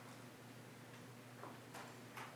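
Near silence: quiet room tone with a steady low hum and a few faint clicks in the second half.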